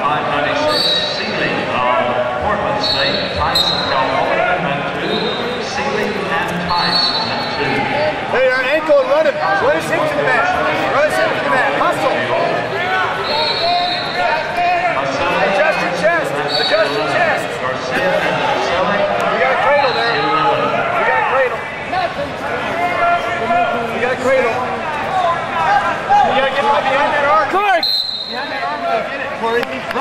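Babble of many voices echoing in a large arena hall, with no single clear speaker. About nine short high-pitched tones come and go at irregular moments.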